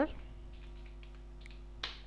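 Computer keyboard: a few faint keystrokes, then one sharp key click near the end as a command is typed into a Run box and entered.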